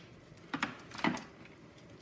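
Faint handling noises from a wiring harness and its plastic connector being moved about: a couple of soft, brief clicks and rustles, about half a second and about a second in.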